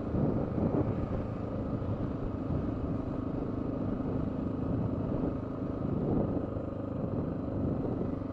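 Honda XR650L's single-cylinder four-stroke engine running steadily while the motorcycle rides along a gravel road.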